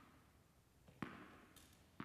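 Near silence, broken by one faint, sharp tap of a tennis ball about a second in, with a short ringing tail.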